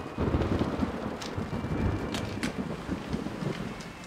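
Rain falling heavily, with a low rumble under it and a few sharp taps on top. It starts suddenly.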